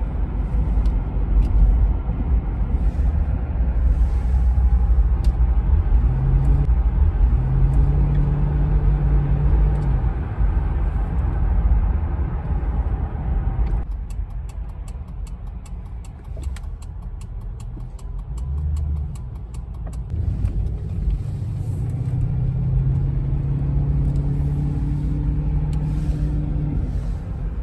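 Car engine and road rumble heard from inside a moving car, the engine note rising as it speeds up. About halfway through it quietens as the car slows and a faint fast ticking comes through, then the engine builds again as the car pulls away.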